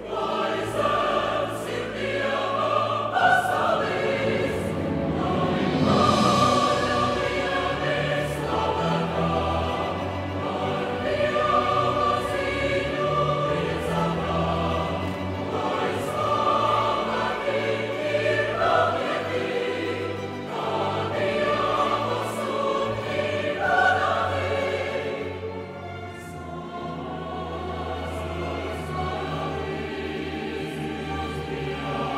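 Mixed choir singing held chords with a string orchestra accompanying, growing softer about five seconds before the end.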